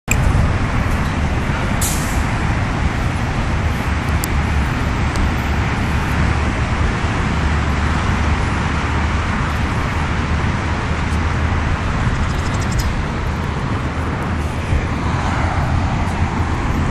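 Steady outdoor background noise: a continuous low rumble with hiss, with a couple of faint clicks in the first few seconds.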